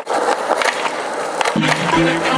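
Skateboard wheels rolling on a concrete sidewalk, a steady rumble with a few sharp clicks. Music comes in about one and a half seconds in.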